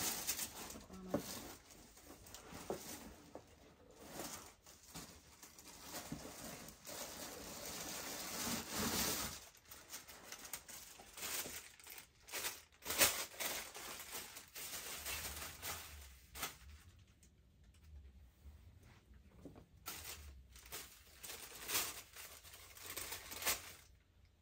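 Clothes and paper rustling and crinkling as they are rummaged through and handled, in irregular spells with a few sharper crackles, the loudest about thirteen seconds in.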